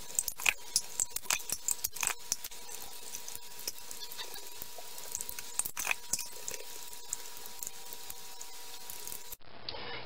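Scattered light clicks and taps of metal soup cans and a spatula against a metal tray as thick condensed soup is tipped out and spread. The taps come thickest in the first couple of seconds, with a faint steady high tone underneath.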